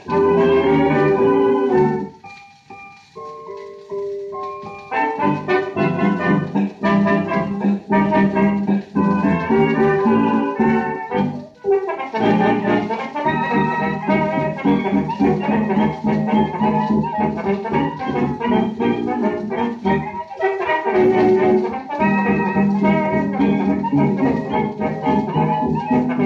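1920s dance band playing a bouncy Charleston-era instrumental passage, played back from a 78 rpm shellac record through a Garrard SP25 turntable in mono. About two seconds in the band drops to a few quiet held notes, then comes back at full strength about five seconds in.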